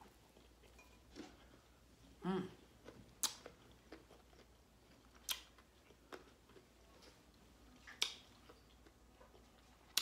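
Quiet chewing with four sharp, wet lip smacks spaced two to three seconds apart as fingers are licked clean of sauce. A brief hum comes about two seconds in.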